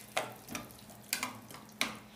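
Metal spoon stirring chopped collard green stems in water in a metal pot: a few wet sloshing swishes, with the spoon scraping the pot.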